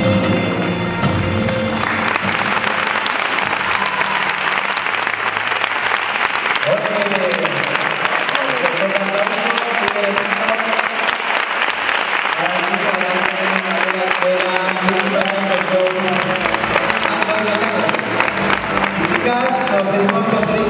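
Music ends about two seconds in and an audience applauds steadily, with music playing again under the applause.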